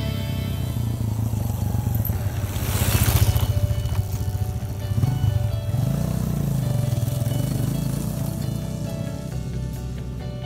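Off-road motorcycle engine running and revving through corners on a dirt course, loudest about three seconds in and sweeping up and back down in pitch around the middle, under background music.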